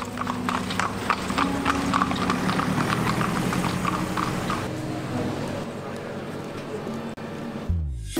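A horse's hooves clip-clopping on the road as it pulls a carriage: a quick, even run of hoofbeats that fades out about halfway through. Background music plays throughout.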